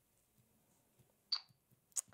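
Near silence, broken about a second and a half in by one short hiss, with a faint click at the end.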